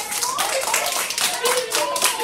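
A group of children applauding, many quick hand claps overlapping, with children's voices calling out over it.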